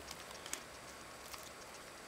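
Light handling sounds of a tablet being lifted out of its cardboard box: two faint clicks, about half a second and a second and a half in, over a low hiss.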